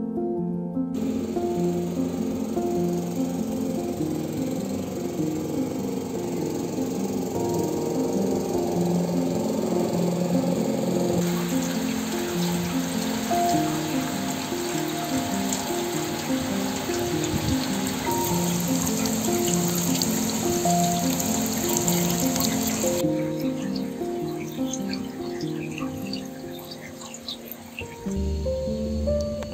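Background music with a steady, repeating plucked melody. Under it is the even hiss of heavy rain falling, loudest from about eleven seconds in until a few seconds before the end.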